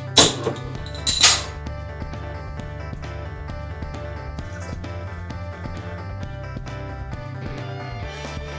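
A crown cap is prised off a bottle of bottle-conditioned homebrew beer: a sharp click just after the start, then a second, slightly longer burst about a second in, the carbonation releasing. Background guitar music plays throughout.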